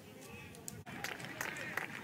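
Faint ballpark crowd ambience, a low murmur with a few light clicks. It drops out for an instant near the middle, at a cut in the broadcast.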